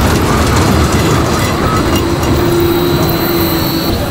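Ride cars rolling along a track: a steady rumbling noise, with a held hum from about halfway through until just before the end.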